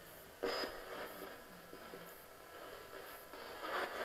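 Faint, choppy radio fragments and hiss from a ghost box sweeping through stations, with a slightly louder burst about half a second in.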